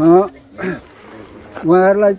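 A man's voice speaking in short phrases, with a pause of about a second in the middle.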